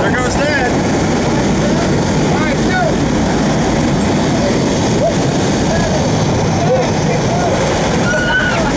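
Loud, steady engine and rushing-air noise inside a small skydiving jump plane's cabin with the jump door open, with voices calling out over it now and then.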